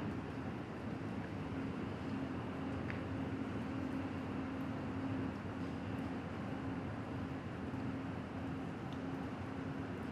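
CAF rubber-tyred metro train running slowly on its steel wheels over plain rails, heard from inside the cab: a steady rumble with a low hum that keeps cutting in and out. The steel wheels carry the train here because this track has no running surface for its rubber tyres.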